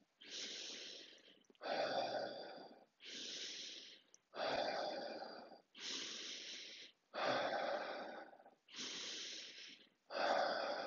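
A man taking deep, forceful breaths in a yogic breathing round, seven audible breaths in and out of about a second and a half each. The breaths alternate between a higher, hissing breath and a fuller, lower breath.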